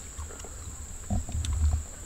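A low animal call, under a second long, about a second in, over a steady high-pitched whine and a low rumble.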